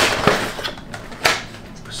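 Cardboard box and packaging scraping and knocking as a plastic hard hat is pulled out of it, a few short scrapes spread through the moment.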